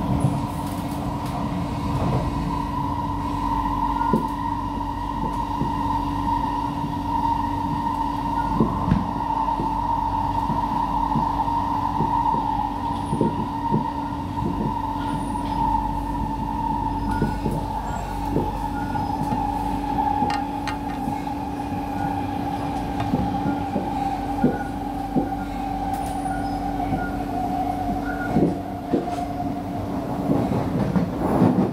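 SMRT C151B train running, heard from inside the car: a traction-motor whine falls slowly in pitch as the train slows, over a steady low hum and rumble, with scattered clicks of wheels over the track.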